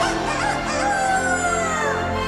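The show's soundtrack music, with a pitched swoop that glides steadily downward for about a second in the second half.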